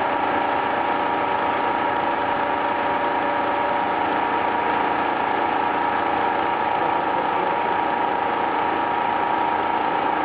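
Flexor 380C servo-driven label die-cutting and rewinding machine running steadily at production speed, a continuous mechanical whir with several held tones, one mid-pitched tone standing out.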